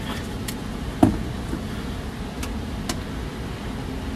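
Heat pump air handler's blower motor running steadily behind its closed access door, with a sharp knock about a second in and a few faint clicks.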